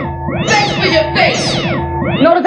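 Early-1990s Spanish techno (makina) from a club DJ set: arching, meow-like sounds rising and falling in pitch about once a second over held notes and a low bass line.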